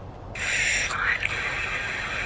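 A long hissing "shhh" from the Necrophonic ghost-box app, played through a phone's small speaker. It starts about a third of a second in and lasts about two seconds. It is taken as a spirit's answer telling him to be quiet.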